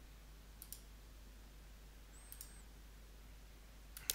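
Faint computer mouse clicks in near silence: a quick pair of clicks about two-thirds of a second in and another pair a little past halfway.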